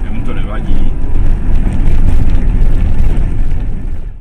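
Steady low rumble of a 30-seat bus driving along a street, heard from inside the cab, with a brief voice in the first second.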